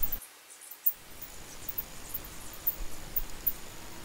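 Faint background hiss with a thin, steady high-pitched tone running through the middle, a short click about a second in, and a few tiny high ticks.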